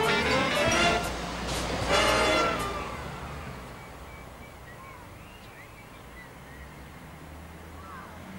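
Big band brass music fading out about two and a half seconds in, over the low rumble of a bus engine and road traffic, which carries on quietly afterwards.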